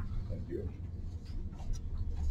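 Faint scratching of a pen writing on paper over a steady low room hum.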